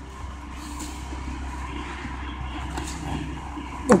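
Steady low background rumble with faint rustles of handling noise.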